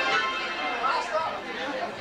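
Crowd chatter in the room between songs, over held tones ringing from the band's amplified instruments.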